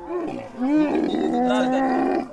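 Dromedary camel vocalizing with its mouth open as a hand holds its lip: a short grunt, then a loud drawn-out bellow from about half a second in, lasting about a second and a half.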